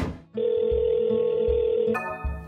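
A short whoosh, then a steady electronic ringing tone of a video call connecting, sounding thin as over a phone line, over a background music beat. The tone cuts off suddenly at the end.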